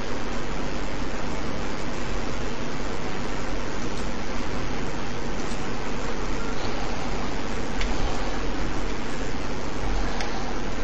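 Loud, steady hiss of microphone and recording noise with a low hum underneath, and a few faint clicks.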